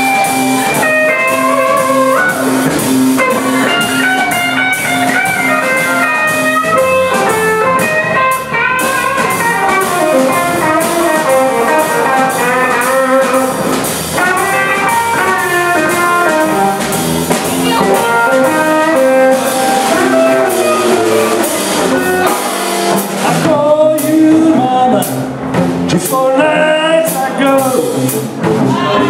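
Electric blues played live by a trio: lead electric guitar soloing with bent notes over electric bass and drum kit.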